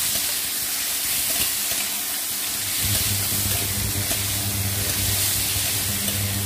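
Star fruit and tomato pieces sizzling in hot mustard oil in a steel kadai as they are stirred with a metal spatula. A low steady hum comes in about halfway.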